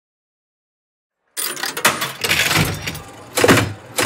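Slot-machine reel and coin sound effects: a quick run of mechanical clunks and metallic rattles that starts suddenly about a second and a half in.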